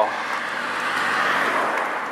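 A passenger car driving past close by, its road noise swelling to a peak about a second and a half in and then falling away.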